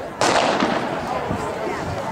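Starter's pistol fired once to start a race: a single sharp crack a fraction of a second in, ringing out briefly.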